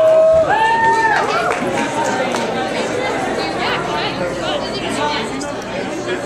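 Several people talking at once in a large hall. In the first second and a half one voice draws out two long, held notes before the overlapping chatter takes over.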